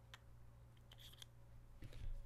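Near silence with a low steady hum, broken by a few faint light clicks of small metal reel parts: a shaft being threaded through the spool's bearing.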